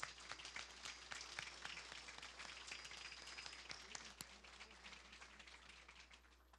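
Audience applauding: many people clapping at once, fairly faint and steady, thinning a little near the end.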